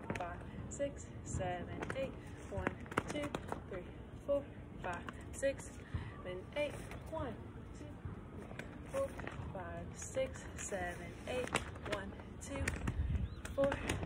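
Color guard flag being worked through a routine: the silk swishing and flapping, with frequent sharp knocks and clicks as the metal pole is handled and caught. A voice is heard faintly in between.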